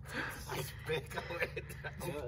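Faint voices over a low, steady rumble.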